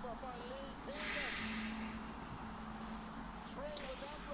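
Faint broadcast commentary on a Gaelic football match playing in the background. About a second in comes a breathy hiss of air lasting about a second, like a long exhale.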